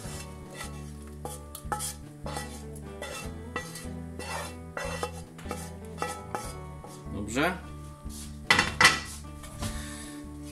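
Wooden spatula scraping and tapping against a frying pan as fried onions are scraped out into an enamelled pot: a run of short scrapes and knocks, with a few louder knocks near the end.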